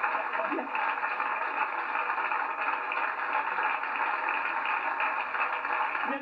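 Studio audience laughing and applauding, a steady dense crowd noise, dull and muffled as on an old off-air TV recording.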